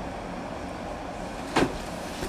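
Steady low background noise, with one short, sharp click about one and a half seconds in.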